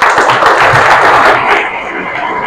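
Loud applause from a large audience, many hands clapping at once, easing a little near the end.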